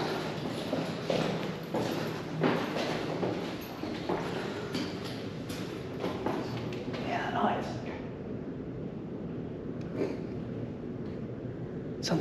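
Footsteps walking on a hard floor at a steady pace, a step about every two-thirds of a second, quieter after about eight seconds.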